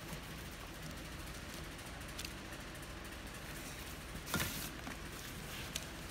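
Steady low room hum, with a brief rustle about four seconds in as items are handled over a cardboard box lined with plastic bags.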